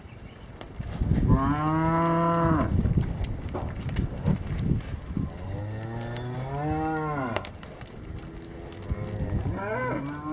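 Heifers mooing: three long calls, about a second in, about five seconds in and a fainter one near the end, with a few sharp knocks in between.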